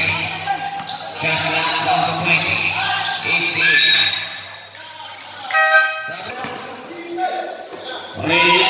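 A basketball being dribbled on a concrete court amid voices in a large covered gym, with a brief horn-like buzz a little past halfway.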